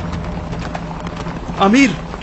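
Hooves of a group of ridden horses clopping along, a quick run of short clicks, then a man calls out one word near the end.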